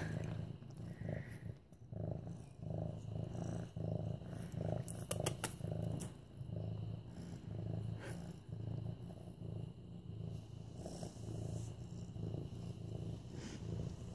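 Young medium-haired orange tabby cat purring steadily while being petted: a low rumble that swells and fades in short cycles with its breathing. A few faint clicks come about five seconds in and again near eight seconds.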